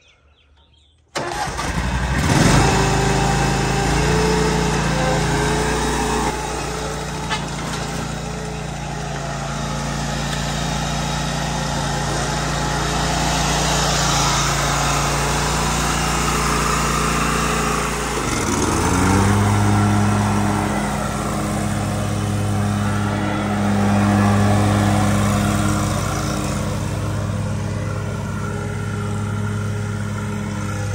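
Exmark Lazer Z E-Series zero-turn mower's engine starting about a second in and then running steadily. About 18 seconds in its note dips and resettles, running louder and deeper as the mower is throttled up to mow.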